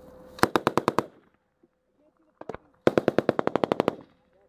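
Automatic machine-gun fire in two bursts: a short one of about six rounds near the start, a couple of single shots, then a longer burst of about a dozen rounds from about three seconds in, at roughly ten rounds a second.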